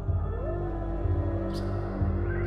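Dark ambient film score: low sustained drones, with a moaning tone that swells up and bends back down about half a second in, and a short airy hiss near the end.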